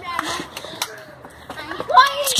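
Indistinct voices, with knocks and rustling from a handheld camera moving fast.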